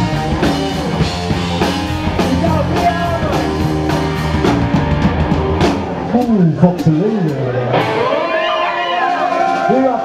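Live rock band playing: Stratocaster-style electric guitar, bass and drum kit, with a sung voice coming in partway through. Near the end the deep low end drops away, leaving the voice and guitar.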